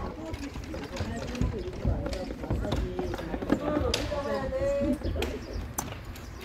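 Indistinct voices of several people talking and calling, with a low rumble of wind on the microphone and a few sharp clicks.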